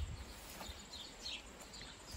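Quiet outdoor ambience with a few faint, short bird chirps.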